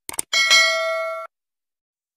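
Subscribe-animation sound effect: a couple of quick clicks, then a bright bell chime that rings for about a second and cuts off suddenly.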